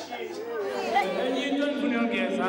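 Voices of several people talking over one another: general chatter.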